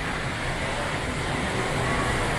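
Steady rushing background noise of a large store's interior, even and continuous with no distinct events.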